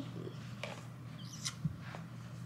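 Faint roar sound effect from a battery-powered toy T-Rex, over a low steady hum.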